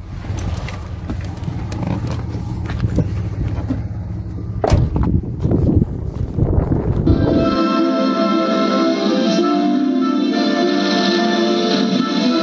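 Wind rumbling on the microphone outdoors, with a single knock about halfway through. After about seven and a half seconds it gives way to background music.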